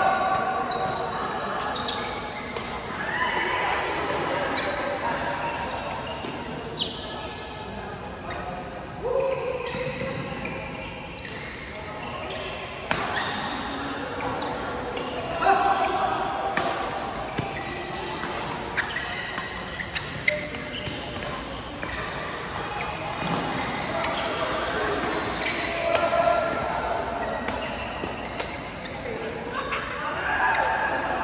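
Badminton rackets hitting a shuttlecock in a doubles rally: sharp, irregular smacks that echo in a large hall, over indistinct chatter from players around the courts.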